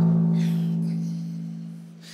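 A musical sound cue at the start of a timed round: one low note struck with its overtones, ringing on and slowly dying away.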